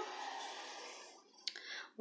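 Faint handling noise as white yarn and a crochet hook are picked up: a soft rustle that fades out over the first second, then one sharp click about one and a half seconds in.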